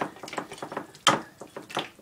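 Spoon clicking and scraping against a glass baking dish of mixed food: two short, sharp clicks, one about a second in and one near the end, over faint kitchen handling noise.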